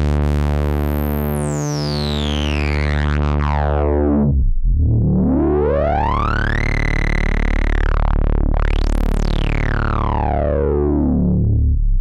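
Korg Prologue analog synthesizer playing a low, resonant saw-wave note with its filter drive switch on its second, grittier level. The cutoff is swept by hand: the first note's resonant peak falls from very high to low over about four seconds and the note stops. A second note's cutoff then rises, holds, dips and sweeps up high and back down.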